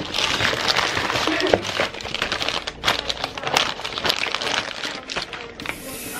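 A snack bag crinkling and rustling as it is handled right at the microphone, a dense run of crackles throughout.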